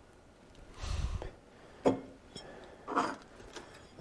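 Small shifter parts being handled and set down on a steel workbench: a few brief rustles and knocks, the sharpest a single click a little under two seconds in.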